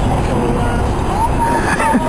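Water running from a garden hose: a steady rushing noise.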